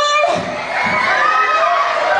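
A theatre audience shouting and cheering, with children's voices among them; drawn-out, high voices rather than clapping.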